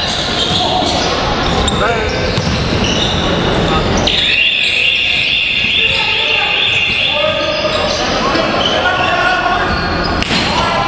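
A basketball bouncing on a hardwood gym floor amid players' voices, echoing in a large hall. A run of high sneaker squeaks on the court comes about four seconds in.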